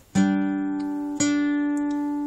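Acoustic guitar sounding a two-note G5 power chord (fifth fret of the D string with seventh fret of the G string), struck twice about a second apart and left ringing.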